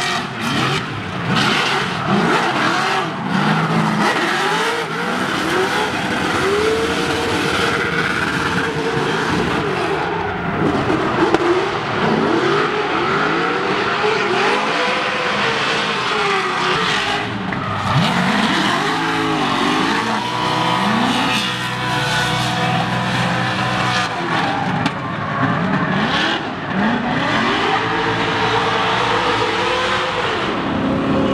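Drift cars on track, their engines revving up and down over and over as the drivers work the throttle through a slide, over the noise of tyres sliding and smoking on the asphalt.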